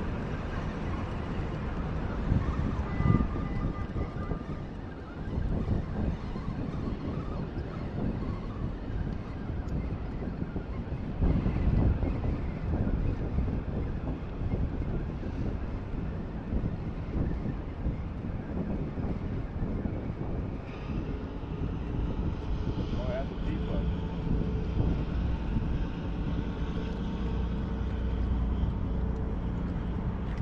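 Wind buffeting the microphone over a steady outdoor background, with faint voices in the distance.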